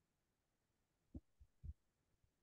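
Near silence, broken by two faint, low thumps a little after a second in and near the end.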